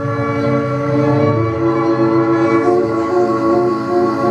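Live drone music: violin and clarinet holding long, steady notes over electronics, forming one dense sustained chord. The lower notes shift about a third of the way in.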